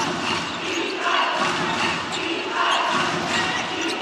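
A basketball being dribbled on a hardwood court, over the steady noise of an arena crowd.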